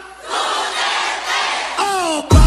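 A crowd cheering and shouting together for about a second and a half after a brief dip at the start. Near the end a single voice begins a drawn-out chanted call.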